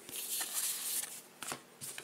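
Trading cards rustling and sliding against each other as a stack is gathered up by hand. There is a soft papery hiss for about the first second, then a couple of light taps.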